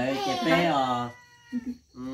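Speech: a voice talking for about the first second, then a brief lull.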